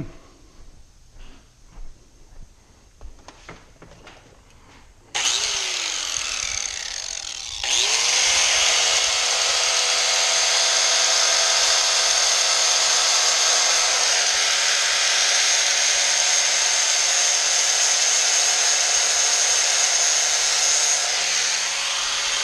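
A handheld electric rotary grinder grinding screws flush inside a Yamaha Banshee clutch cover. A few handling clicks come first; the tool starts suddenly about five seconds in and grinds louder and steadily from about seven and a half seconds on.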